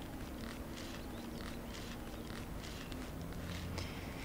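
Faint, soft rustling of fresh rocket leaves as handfuls are dropped with tongs into a pot of spaghetti.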